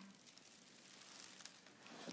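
Near silence: room tone with a few faint rustles.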